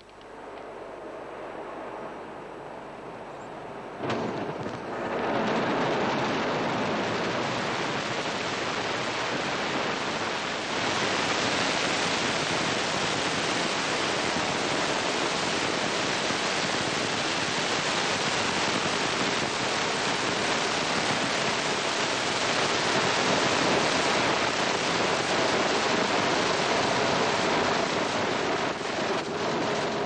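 Ariane 5's two solid rocket boosters and Vulcain main engine during the climb after liftoff: a loud, steady rumble of noise that swells sharply about four seconds in and again a second later, then holds.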